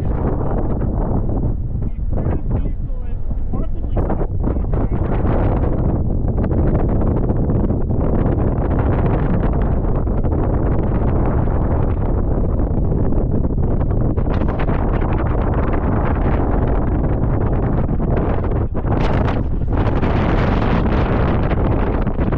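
Wind blowing hard across the microphone: a loud, steady rushing buffet.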